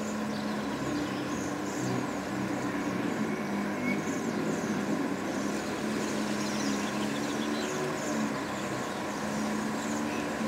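Steady low hum of engine or traffic noise, with short high calls of Bohemian waxwings repeated throughout.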